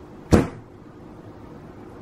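A single sharp knock about a third of a second in, as a cut bar of cold-process soap is worked free of the slab mold's grid divider, against a low steady room hum.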